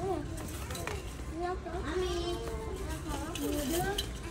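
Background chatter of children's and adults' voices with no clear words, fairly quiet.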